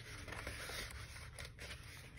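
Faint rustle of a book's pages being turned by hand, with a few soft paper ticks.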